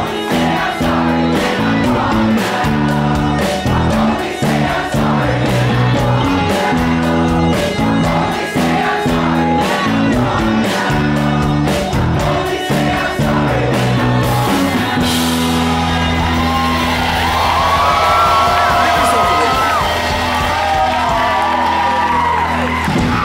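Live rock band (electric guitar, bass, keyboard, drums) playing the song's closing refrain while the audience sings along. About fifteen seconds in the drum beat stops and a final chord is held and rings out, with voices whooping over it.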